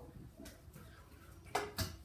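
Two sharp knocks about a quarter second apart near the end, a stunt scooter being set down on the paving, after a mostly quiet stretch.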